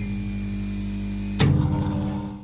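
Intro music: low held notes sounding together, with a fresh chord struck about one and a half seconds in.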